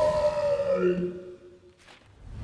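Sustained tones from a film soundtrack slide slightly downward and fade to quiet about halfway through, with a short click near the end.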